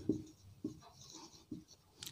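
Marker pen writing a word on a whiteboard: faint, short strokes and a couple of light ticks as the letters are formed.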